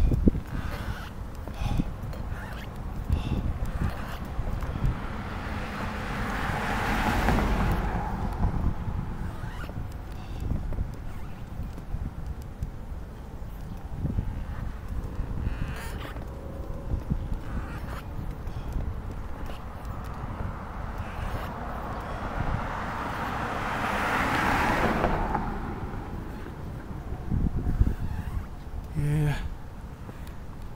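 Two cars pass on the street, each rising and fading over a few seconds: one about seven seconds in, another about twenty-four seconds in. Underneath is a steady low rumble with small knocks from the wheelchair rolling over the concrete sidewalk and wind on the microphone.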